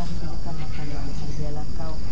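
Insects chirring steadily at a high pitch behind a woman's spoken prayer, over a steady low rumble.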